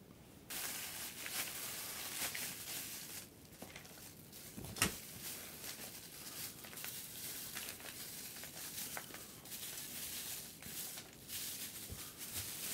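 Plastic food wrapping and bags crinkling and rustling as they are handled and pulled open, with a single sharp tap about five seconds in.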